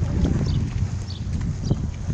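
Footsteps on a concrete path, an uneven run of soft knocks, over a low rumble of wind on the phone's microphone.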